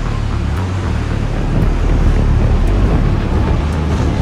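Jet airliner in flight: a steady, loud, deep rumble of engines and rushing air.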